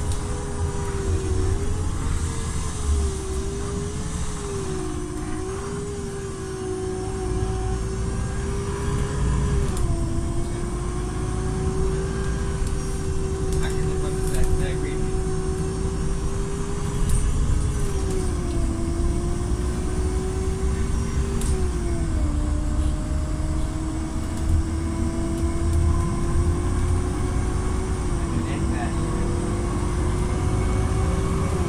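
Inside the cabin of a moving city bus: low engine and road rumble with a steady whining tone that dips and steps down in pitch a few times as the bus changes speed.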